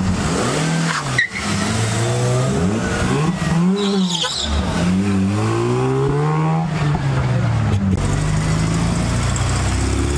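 Car engines revving as cars pull away one after another: several rises and falls in engine pitch, the sound breaking off sharply about a second in and again near the end, where a steadier engine note follows.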